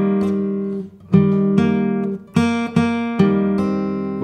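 Fylde Falstaff steel-string acoustic guitar played fingerstyle: a short phrase of plucked notes and chords, with a new attack about every half second, each left to ring and fade.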